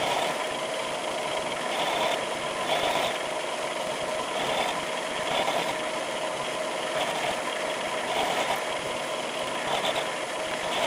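Milling machine running a 14 mm four-flute high-speed steel end mill as it cuts a flute into a steel workpiece: a steady cutting and motor noise that swells and eases about once a second.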